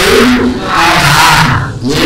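A man speaking Burmese loudly and animatedly into a handheld microphone, his voice amplified.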